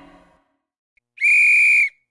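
Referee's whistle blown once: a short, steady, high blast just over a second in.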